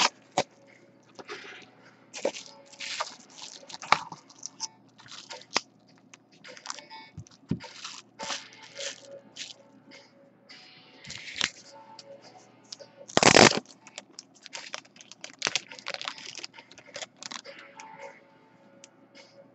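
Card packaging being opened and handled by hand: a padded mailer and a card pack crinkling, crackling and scraping in irregular short bursts, with one louder burst about 13 seconds in.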